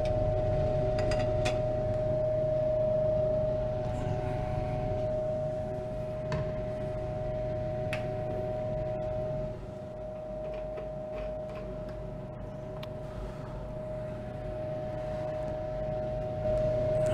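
Steady machine hum with one constant mid-pitched tone over a low drone, like a ventilation fan running, with a few faint clicks; it gets a little quieter about nine and a half seconds in.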